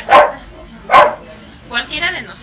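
A dog barking twice, short loud barks a little under a second apart.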